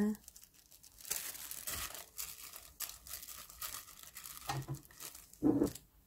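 A wooden spoon scraping a spoonful of thick homemade doenjang (fermented soybean paste) off into a glass bowl of blanched butterbur greens: a run of soft, irregular scrapes and light clicks, with a short louder sound near the end.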